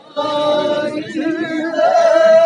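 Voices singing together in a Gavri folk-drama song, starting a fraction of a second in after a brief near-quiet gap, over a steady held note.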